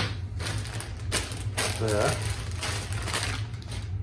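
Small accessory parts and their packaging handled on a workbench: a series of short clicks, rattles and rustles, over a steady low hum.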